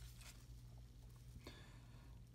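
Near silence: a low steady hum, with one faint brief rustle of trading cards being handled about one and a half seconds in.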